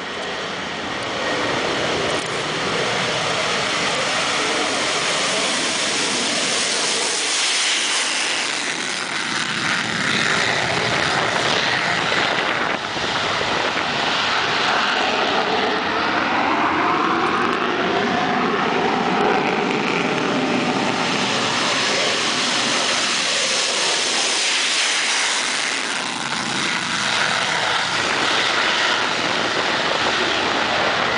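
Several F-16 fighter jets taking off in afterburner: a loud, continuous jet roar that builds over the first couple of seconds and then holds. Midway through, the pitch sweeps up and down as the jets pass.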